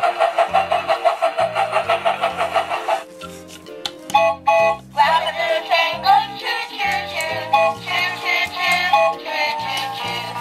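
Music with a steady bass line stepping beneath it: a fast run of repeated high notes for the first three seconds, a brief thin patch, then a bouncy melody for the rest.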